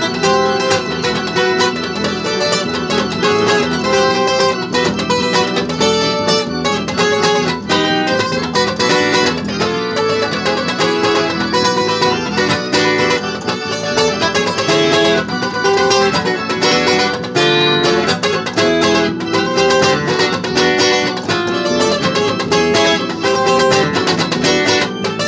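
Acoustic guitar played live in a loose instrumental jam, a steady, unbroken run of strummed and picked notes with no singing.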